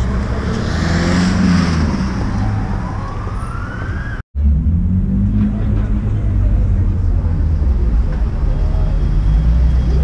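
City street traffic noise with a steady low rumble. A siren-like tone rises in pitch about three seconds in. The sound cuts out briefly just after four seconds, then the traffic rumble continues.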